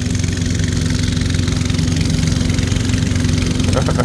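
Engine of a small wooden passenger boat running steadily under way, a constant low drone with the hiss of water along the hull.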